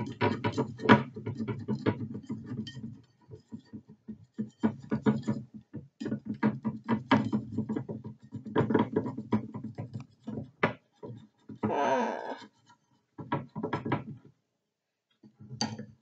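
A metal knife scraping and clicking against a ceramic bowl as it cuts through a soft microwave mug cake: an irregular run of short scrapes and taps, pausing briefly twice.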